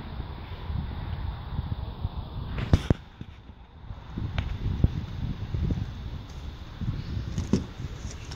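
Low, irregular rumble of handling and wind on the microphone with a few sharp clicks, the loudest about three seconds in. Near the end a car door is unlatched and swung open with a click.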